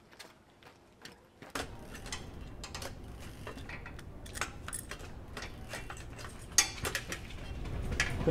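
Scattered metallic clicks and clinks of tools and parts being handled while a bicycle is worked on, over a steady low outdoor background, beginning about a second and a half in; one sharper click near the end stands out.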